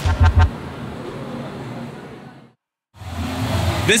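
Electronic background music ends with a last couple of bass beats and fades away to a moment of silence. About three seconds in, busy outdoor background noise comes in.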